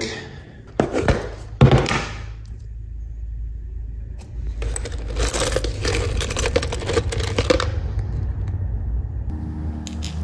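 Small metal hardware (nuts, bolts and washers) clinking and rattling in a clear plastic tub as a hand rummages through it, a dense jingle lasting about three seconds in the middle. Two sharp knocks come before it, in the first two seconds.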